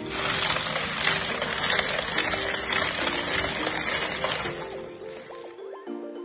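Background music over the noisy slosh and rattle of ice and salty meltwater as a steel pot is spun inside a bowl of ice to freeze fruit sorbet. The noise stops near the end, leaving the music alone.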